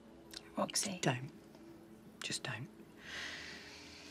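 Soft, whispered speech between two women in two short phrases, followed about three seconds in by a steady hiss that lasts about a second.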